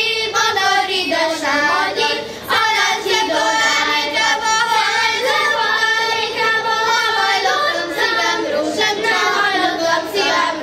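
A children's choir singing a Hungarian folk song, with a short pause for breath about two and a half seconds in.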